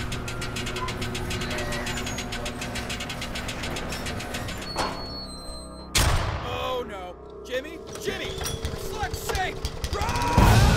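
Sound-designed film mix: a fast rhythmic mechanical clatter over low droning tones and music, then a sudden loud hit about six seconds in, followed by several short warbling cries as the noise builds back up.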